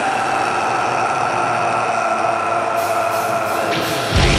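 Sustained droning intro chord of several held notes over a steady hiss, building ahead of the song's entry, with a few high crashes near the end.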